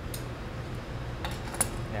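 A few light clicks of steel glassblowing shears against the neck of a blown-glass piece, over a steady low hum. The glassblowers are setting up to break the end off the piece.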